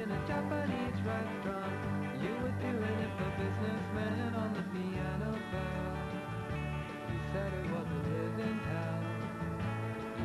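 A rock song playing in an instrumental stretch: guitar over a bass line that moves between low held notes, with a steady beat.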